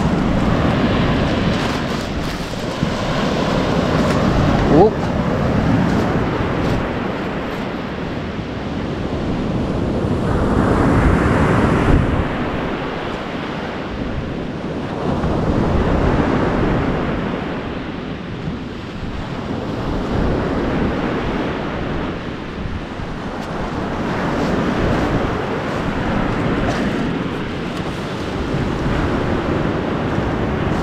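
Surf breaking and washing up a pebble beach, rising and falling in slow surges every several seconds, with wind buffeting the microphone.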